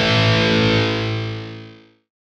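A distorted electric guitar chord is struck and left to ring, then fades away to silence just before the end.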